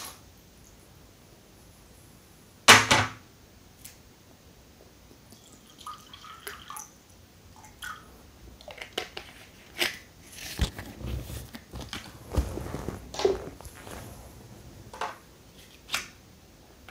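A plastic water bottle and mugs handled on a table, with a loud clatter about three seconds in. Then come scattered clicks and crinkles of the bottle, and water is poured from the bottle into a mug.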